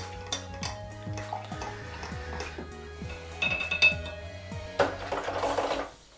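A stirring rod clinking and scraping against a glass beaker in repeated light taps as photographic paper developer is stirred into its dilution water. Soft background music plays under it, and near the end there is a brief rush of noise.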